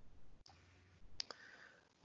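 Near silence on an online call, with a pair of faint clicks a little over a second in.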